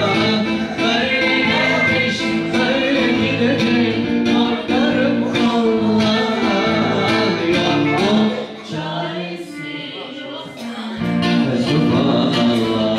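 Live music: singing into a microphone over an amplified instrumental backing with a steady beat. Near the end the bass and beat drop out for about two seconds, then the full band comes back in.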